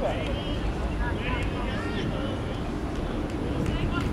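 Distant, indistinct shouts of young football players on the pitch, a few short high calls, over a steady low rumble.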